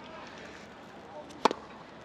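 A single sharp tennis ball impact about one and a half seconds in, with a brief ring after it, over a low outdoor background.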